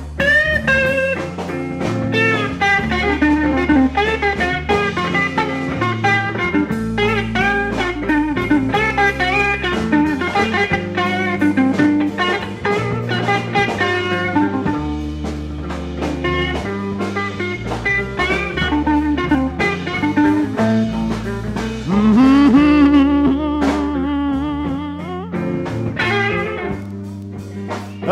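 Electric blues guitar solo with band backing: quick runs of notes and bent notes over a moving bass line, with a louder held, bent note about 22 seconds in.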